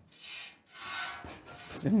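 Two short rubbing, rustling noises, each about half a second, from hands and clothing working against an animal's coat and straw bedding. A voice begins near the end.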